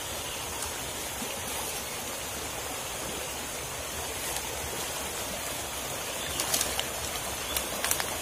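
Shallow rocky creek running steadily over stones, with a few light clicks near the end.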